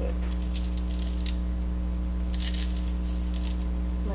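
Plastic bag crinkling and rustling in two short bouts, the first near the start and the second past the middle, as emulsifying wax is scooped out with a spoon. A loud steady electrical hum runs underneath.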